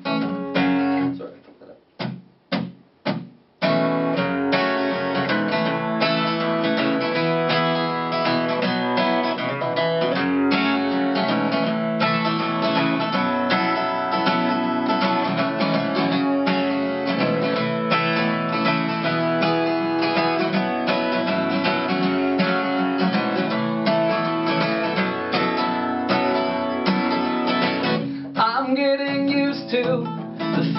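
Acoustic guitar being strummed: a few separate strums with gaps, then steady rhythmic strumming from about four seconds in.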